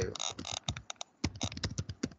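Computer keyboard being typed on, a quick run of key clicks.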